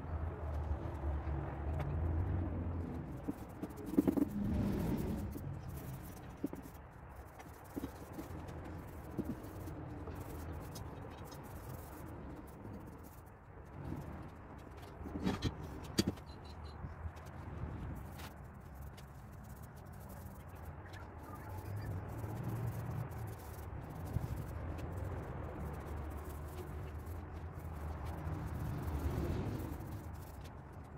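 Low background rumble with a few light knocks and handling clatter of work on the bench, most noticeably about four seconds in and twice around the middle.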